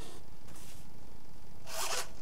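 Quiet steady room hiss, with a short soft rustle near the end.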